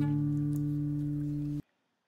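Taylor GS Mini acoustic guitar with a strummed D chord ringing out and slowly fading, cut off suddenly near the end.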